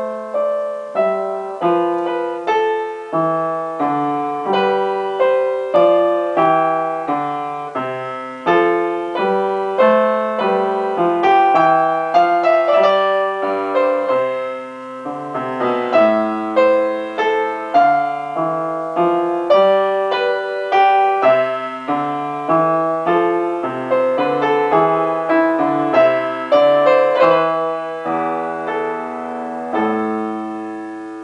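Upright piano played from sheet music: chords and melody notes struck about once or twice a second, each ringing and fading, with a last chord struck near the end and left to ring.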